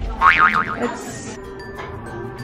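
Background music with a cartoon-style 'boing' sound effect: a springy, wobbling tone that starts about a quarter second in and lasts about half a second.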